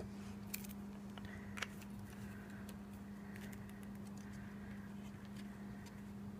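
Faint handling of cardstock and a liquid glue bottle: a few light taps and rustles, one sharper about one and a half seconds in, over a steady low hum.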